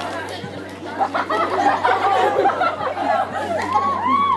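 Overlapping chatter of a group of children talking over one another, with no single voice standing out.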